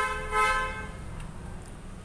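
A vehicle horn honks once in a single steady tone lasting under a second, right at the start.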